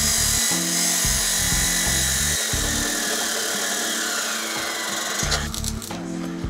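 Abrasive cutoff saw grinding through steel stock: a steady, loud high hiss. About five seconds in it gives way to a crackle as arc welding on square steel tube begins. Background music with a moving bass line runs underneath.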